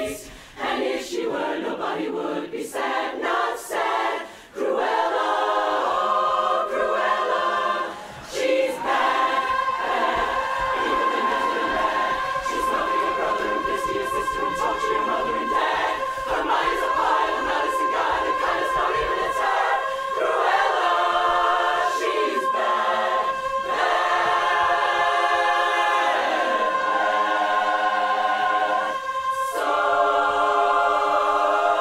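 Women's barbershop chorus singing a cappella in close harmony, in short clipped phrases with brief breaks at first. From about nine seconds in, a high note is held steadily over the moving chords of the other voices.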